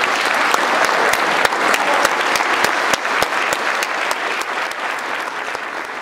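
Audience applauding: a dense clatter of many hands clapping together, slowly thinning and growing quieter over the last few seconds.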